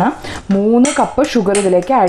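Sugar being tipped from a glass bowl into a steel pot of beetroot juice, the glass bowl clinking several times against the steel pot.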